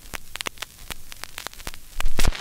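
Surface noise of a 78 rpm shellac record playing with no music: irregular clicks and crackle over a low hum and hiss.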